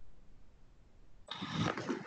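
Faint low hum from an open video-call microphone. A little over a second in, a person's voice suddenly cuts in over the call.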